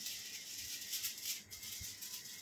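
A comb raked quickly through a woman's hair while it is teased and put up: a scratchy rustle that pulses a few times a second, strongest in the first second and a half.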